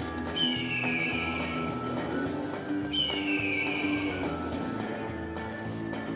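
Buffalo Link slot machine playing its free-game bonus music over a steady beat, with two falling whistle-like sound effects about two and a half seconds apart as the reels spin.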